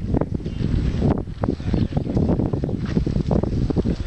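Wind buffeting the microphone: a loud, uneven low rumble with gusts that rise and fall.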